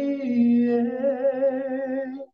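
A man singing a Christian song into a handheld microphone, holding one long note with vibrato that widens toward the end.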